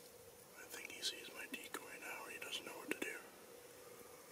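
A man whispering for about two and a half seconds, starting just under a second in.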